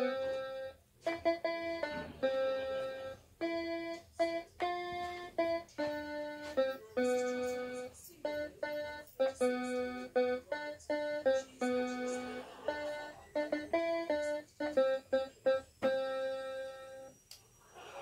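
Small electronic keyboard playing a one-handed melody, a single note at a time with short gaps between notes. The tune stops about a second before the end.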